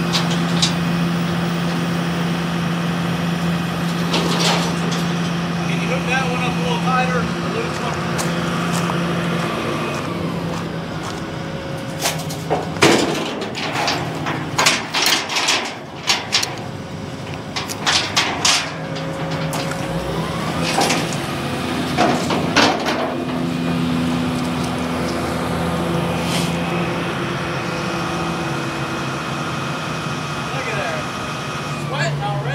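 Volvo crawler excavator's diesel engine running steadily. A cluster of sharp clanks and knocks comes in the middle as a bundle of floor-system parts is handled.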